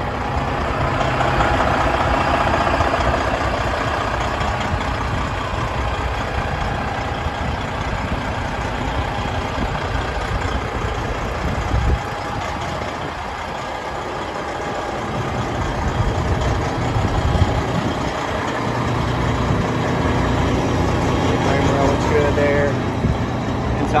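Warmed-up 12.7-litre Detroit Series 60 inline-six diesel idling steadily. It dips in level around the middle and comes up louder again near the end.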